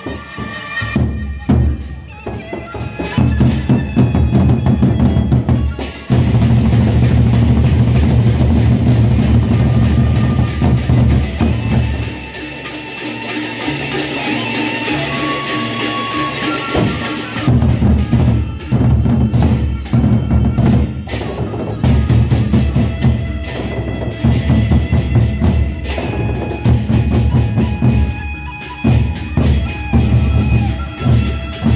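Gendang beleq ensemble playing: large barrel drums beaten with sticks in fast interlocking rhythms, with cymbals. Around the middle the drums drop back for a few seconds while a high wind melody holds long notes, then the drumming comes back in.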